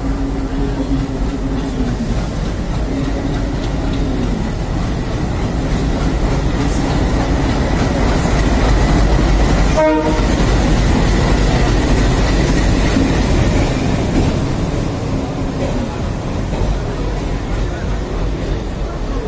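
Diesel locomotive hauling a passenger train into the platform, its engine growing louder as it passes about eight to twelve seconds in. The coaches then roll by with wheels clattering over the rail joints.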